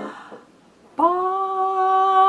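Piano and voice die away to a brief near-silence; about a second in, a woman's singing voice comes in on a single held note, scooping up slightly into pitch and then holding it steady.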